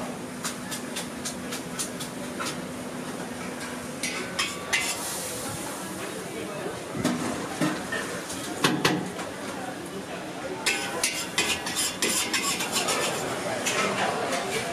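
Kitchen clatter: metal utensils clinking and scraping against pots and pans, a scattered run of sharp clicks and knocks over a steady background.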